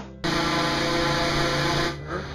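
Loud, steady machine noise with a constant hum. It starts abruptly about a quarter second in and cuts off just before the end.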